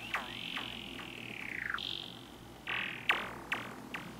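Stylophone Gen X-1 run through effects pedals: a long, high electronic tone gliding down in pitch, a brief steady high tone, then a few short sharp blips.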